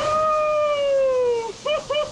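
A man's voice yelling one long held call that slowly falls in pitch for about a second and a half, then a few short yelps, right after jumping into a river pool. A faint hiss of the stream runs underneath.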